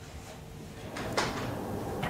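Low steady hiss of an open audio line that steps up in level about a second in, with a brief click or two as it does.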